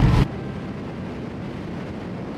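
Car cabin road noise with a low rumble cuts off abruptly about a quarter second in. A quieter, steady, even rushing noise follows.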